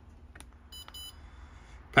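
Two short, high-pitched beeps in quick succession from the touchscreen of a Pentair Fleck 5800 XTR2 water softener control valve: key-press feedback as a setting arrow is tapped to step the meter type. A faint tap comes just before them.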